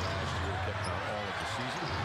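Basketball game sound in an arena: a steady crowd murmur with voices, and a basketball being dribbled on the hardwood court.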